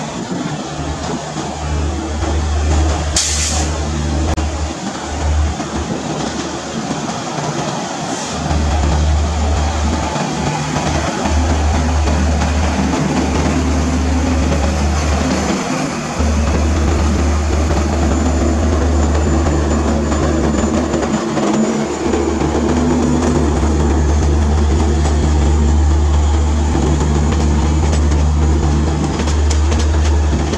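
Passenger train hauled by an electric locomotive rolling past close by: a steady rumble of wheels on rail that dips briefly now and then. There is one short, sharp high-pitched sound about three seconds in.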